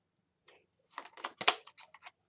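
Tarot cards handled and shuffled in the hands: a quick run of short card clicks and flicks starting about a second in.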